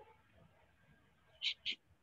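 Quiet room tone, broken about one and a half seconds in by two short, soft hissing scratches a fraction of a second apart.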